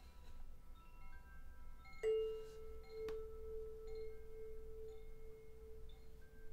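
Himalayan singing bowl struck about two seconds in, ringing on with one strong, slowly wavering tone that sustains. Faint high chime-like tones ring around it.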